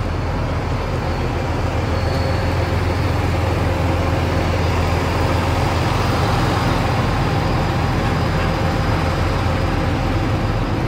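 Tour bus engine idling, a steady low rumble that holds even throughout.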